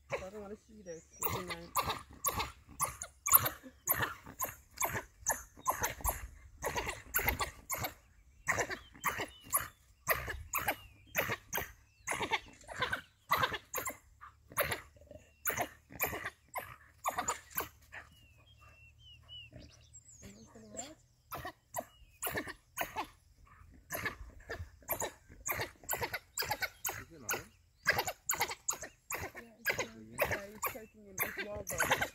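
A pack of African wild dogs calling in short, sharp, rapid calls, several a second, while they rush around a lion holding one of their pack. The calls let up for a few seconds about two-thirds of the way through, then start again.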